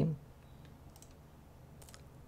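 Faint clicks of a computer mouse, one about a second in and a couple more near the end, over quiet room tone.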